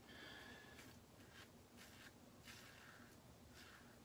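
Faint scratchy strokes of a Karve Christopher Bradley stainless steel safety razor cutting lathered stubble: several short strokes, about a second apart.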